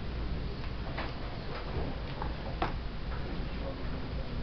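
Scattered light knocks and clicks from large poster boards and an easel being handled and set up, over a steady low room hum.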